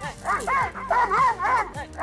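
A Doberman Pinscher barking in quick repeated barks, about three a second, as it lunges on its leash.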